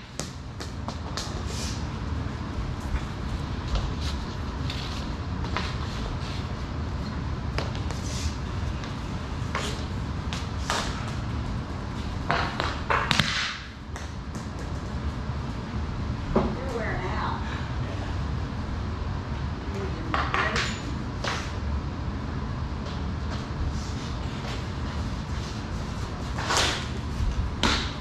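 Hockey sticks striking an orange street-hockey ball on a bare concrete floor: sharp clacks at irregular intervals, echoing in a concrete basement, over a steady low rumble.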